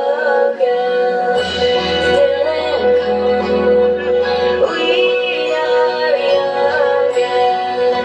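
A song with a high sung voice holding long, wavering notes over an instrumental backing. A bass part comes in about a second and a half in and drops out near the five-second mark.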